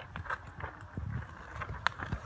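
Scattered light clicks and soft knocks, with one sharp click near the end.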